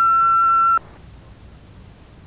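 Answering machine beep: one steady high tone that cuts off sharply just under a second in. It marks the end of message playback after the machine reads the message's time stamp. Faint line hiss follows.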